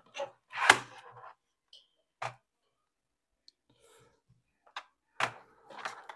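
About five sharp clicks and light knocks, the loudest about a second in, from the parts of a desk lamp's arm being handled and fitted together, with quiet gaps between them.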